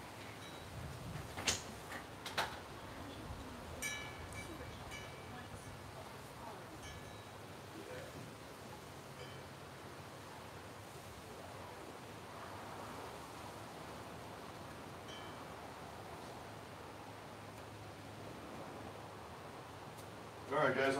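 Quiet outdoor background with a faint steady hiss, two sharp knocks about a second and a half and two and a half seconds in, and a few brief faint high chirps scattered through.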